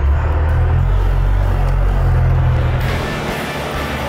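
Merlo telehandler's diesel engine running with a steady low rumble, just after it has started. About three seconds in, background music comes in over it.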